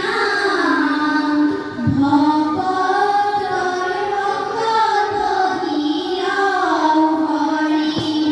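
Children singing a dihanam, an Assamese Vaishnavite devotional hymn, together in unison, drawing each note out long and gliding between pitches.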